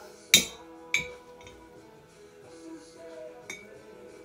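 Metal spoon clinking against a glass mason jar as yogurt is spooned in: two sharp clinks in the first second, the first the loudest, and a lighter one near the end.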